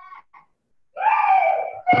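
A high-pitched, drawn-out vocal cry or whine that falls slightly in pitch, lasting about a second from about a second in, heard through a video call. It is preceded by a couple of faint short sounds.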